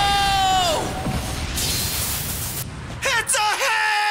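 Cartoon battle sound track: a long, high-pitched held battle yell that breaks off less than a second in, over a low rumbling effect, then a burst of hiss about two seconds in and more shouting with pitch swoops near the end.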